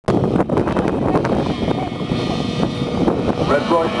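A pack of grass-track racing sidecar engines revving hard together at a race start, a loud rough blur of many engines, with wind on the microphone. A loudspeaker commentary voice comes in near the end.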